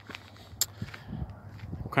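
Quiet outdoor background with a faint low hum and a few soft clicks.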